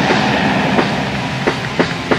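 Raw black metal with a dense, hissing wall of distorted guitar and cymbal wash. Drum hits come back in through the second half.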